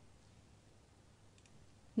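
Near silence: room tone, with a faint computer click about one and a half seconds in.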